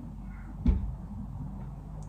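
A single short, dull knock about two-thirds of a second in, against low room noise.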